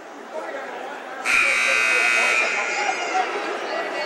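Gymnasium scoreboard horn sounding once for about a second and a half over crowd murmur, signalling the end of a timeout.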